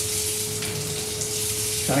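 Tap water running steadily from a kitchen faucet into a stainless-steel pitcher, over the faint sizzle of the saag simmering in the pan.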